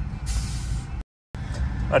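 Low steady rumble of a car, heard from inside the cabin. About a quarter second in there is a short hiss lasting under a second, and just after a second in the sound cuts out completely for a moment.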